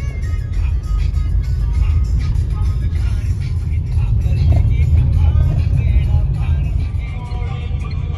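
Music playing over the steady low rumble of a car driving, heard from inside the cabin.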